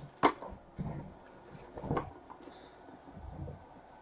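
A stack of trading cards being handled: a few light taps and rustles, the sharpest about a quarter second in.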